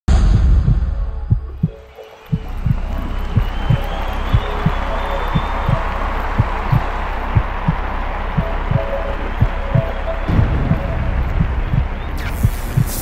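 Steady low thumping beat, about three thumps a second, over a continuous low hum. It drops away briefly about two seconds in, then carries on evenly.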